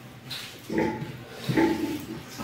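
Two short, pitched mouth sounds from a person eating rice by hand, about a second in and again shortly after.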